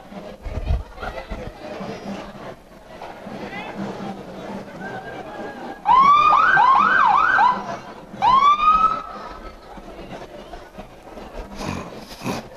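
Police car siren giving short bursts: a rising wail that breaks into a few fast up-and-down yelps, then one more rising whoop a moment later.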